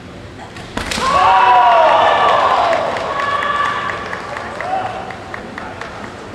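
A sharp crack of a bamboo shinai strike about a second in, followed at once by a loud, long kiai shout that trails off into shorter shouts. Referees' flags go up afterwards, so this is the sound of a scoring strike.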